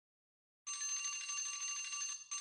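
A bell alarm sound effect starts ringing about two-thirds of a second in and rings steadily and brightly. It signals that the countdown timer has run out.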